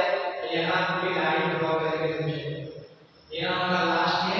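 A man's voice chanting Arabic letter names in long, drawn-out sung tones, in the manner of alphabet recitation drill. It breaks off briefly about three seconds in and then carries on.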